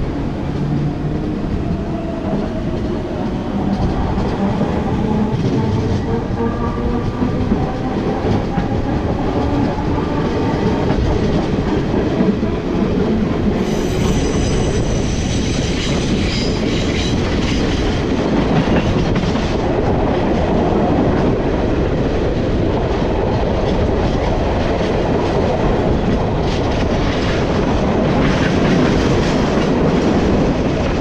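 The B40 electric train pulling away and picking up speed, heard from a car window. A whine rises in pitch over the first ten seconds or so, over steady wheel-on-rail running noise with clickety-clack over the track. A higher-pitched squeal joins about 14 seconds in.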